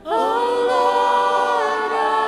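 Church choir and worship singers singing a hymn. Together they take up a new phrase right at the start and hold long, steady notes in a chord, with little accompaniment beneath.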